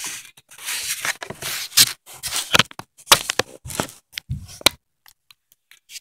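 Hands handling small plastic toys and packaging on a cardboard box: an irregular run of short scrapes and rustles close to the microphone, falling quiet about five seconds in.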